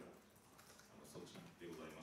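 Faint computer keyboard typing in a quiet pause, with a man's speech over a microphone coming back in short stretches from about a second in.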